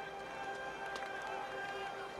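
A sustained, quiet orchestral chord held steady, with a few faint footfalls of someone running on a dirt field.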